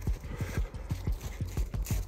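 Running footsteps: a fast, even patter of short thuds, about seven or eight a second.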